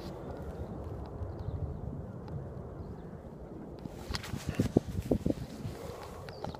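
Wind rumbling on a phone microphone outdoors, then a quick run of short knocks and rustles in the last two seconds.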